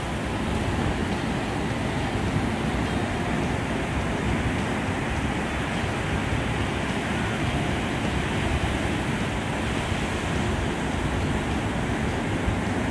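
Steady rush of ocean surf breaking and washing onto a beach, with wind.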